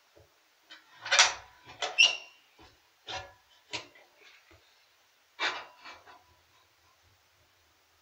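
Clunks and clatter from a small cast-iron wood stove's door being shut and latched while the fire is lit. About five sharp knocks fall in the first six seconds; the loudest come about one and two seconds in, the second with a brief metallic ring.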